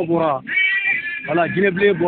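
A voice speaking or calling out in a low-quality, muffled recording, with a drawn-out high-pitched sound about half a second in.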